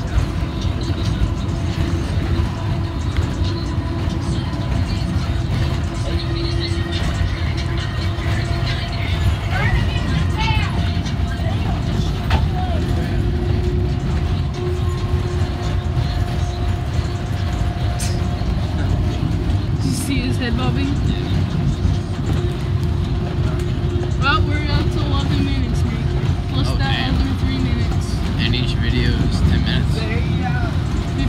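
Steady low rumble of a school bus's engine and road noise heard from inside the moving bus, with other passengers' voices in the background.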